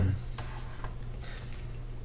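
A few faint light ticks of a stylus on a tablet as a circle is drawn, over a steady low electrical hum.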